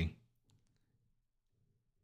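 Near silence after a spoken phrase ends, with a few very faint clicks about half a second in.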